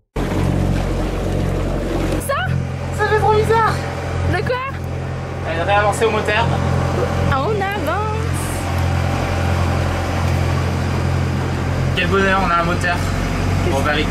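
A sailboat's inboard engine running under way, a steady low drone, with excited voices over it.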